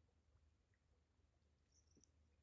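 Near silence: faint outdoor background hum, with a brief faint high chirp near the end.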